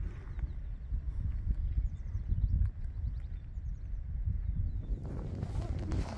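Wind buffeting the microphone: an uneven low rumble throughout, with a few faint high chirps in the middle.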